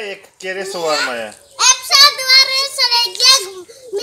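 Young children speaking in high voices, several short phrases with brief pauses between them.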